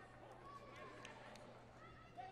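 Near silence: faint, indistinct voices in the background, with a few light clicks in the first second and a half.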